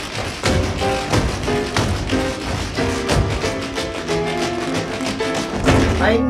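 Tap shoes striking a wooden floor in quick, irregular taps during a tap-dance routine, over music.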